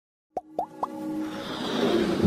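Animated logo intro jingle: three quick pops that each glide upward in pitch, about a quarter second apart, then a swelling musical build.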